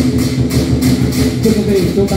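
Lion and dragon dance percussion: cymbals and drum beating a fast, steady rhythm of about four strokes a second, over a steady low hum.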